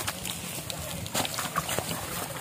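Faint voices in the background, with a few light clicks and knocks.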